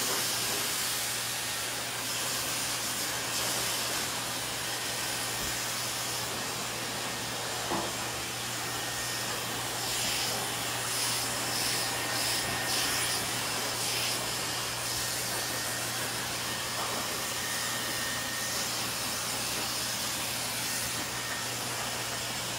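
Handheld hair dryer running steadily, blowing air through wet hair: an even rush of air over a low motor hum.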